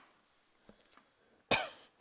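A person coughing once, sharply, about one and a half seconds in.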